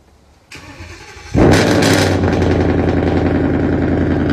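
Car engine started by remote from its key fob: a short crank from about half a second in, then it catches about 1.4 s in with a loud flare rev that settles within about half a second into a steady, fast idle.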